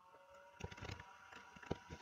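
Faint clicks of a computer keyboard and mouse, a few scattered taps, as text is copied and pasted and a button is clicked.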